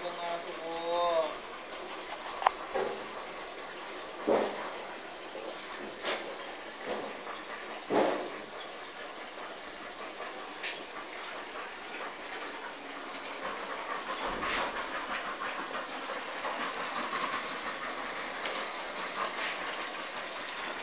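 Puppies play-fighting, with a handful of short, sharp yips and growls scattered through their scuffling.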